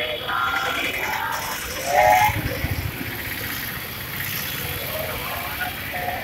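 Indistinct voices of people in a street, with a louder call about two seconds in, over a steady background hum of street noise.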